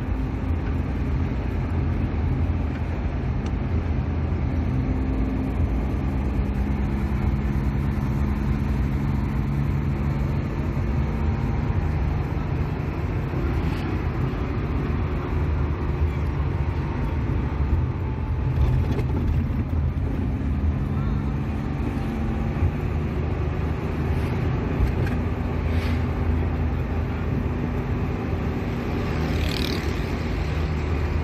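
A vehicle's engine and road noise heard from inside the cabin while driving. The sound is steady, with the engine note drifting slowly up and down.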